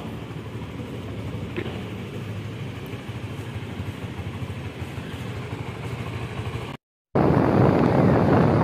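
Steady street traffic with motorcycle engines running. It cuts out briefly near the end, then gives way to a louder rush of wind and engine noise from a motorcycle being ridden.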